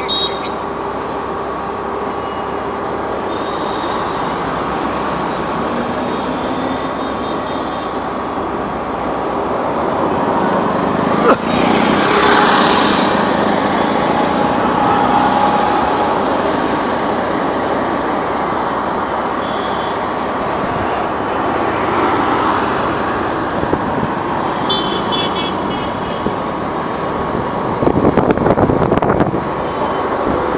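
Motor scooter riding through city traffic, its engine running under steady road and wind noise, with other vehicles' horns tooting now and then. A rougher, louder stretch comes near the end.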